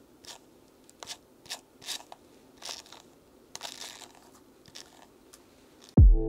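A hairbrush stroking through wig hair at the hairline close to the microphone: a series of short, scratchy rustles, about eight of them, irregularly spaced.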